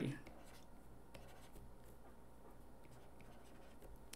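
Faint scratching and light taps of a stylus writing a handwritten note on a tablet screen, with a few soft ticks from the pen tip, over low room tone.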